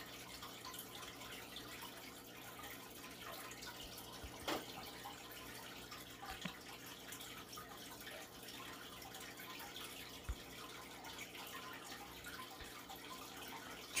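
Faint room tone: a steady low hum and hiss, with a few soft clicks scattered through.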